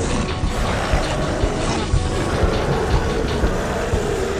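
Loud, dense action film score over a heavy low rumble, with short thuds scattered through it.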